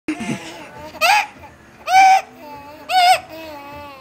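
Baby laughing in loud, high-pitched squeals, three bursts about a second apart, with softer voiced sounds between them.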